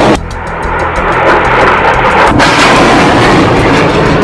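Rockets launching: a loud, continuous rushing roar, with background music underneath.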